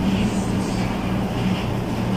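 Steady low background hum with an even hiss.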